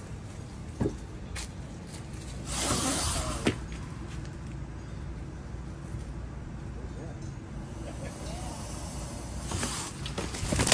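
A young alligator hissing once, a short breathy hiss lasting under a second about two and a half seconds in, the defensive hiss of a cornered alligator.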